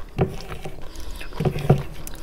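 Wet eating sounds: a mouthful of curry and rice being chewed, with the squelch of fingers mixing rice into curry gravy on a plate. A few short, irregular smacks and squishes.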